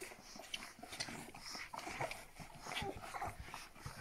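Young Rhodesian Ridgeback puppies nursing in a pile: faint scattered whimpers and squeaks with many small clicking sounds.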